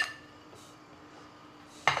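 A utensil clinks against a frying pan of shredded meat as it is stirred, once right at the start with a short ring, then faint room tone until another knock near the end.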